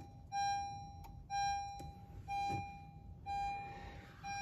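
Honda HR-V dashboard warning chime, one pitched tone that sounds about once a second and fades after each strike, four clear chimes in a row, with the ignition switched on.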